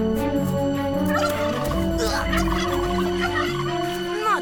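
A turkey gobbling, a cartoon sound effect with quick warbling calls.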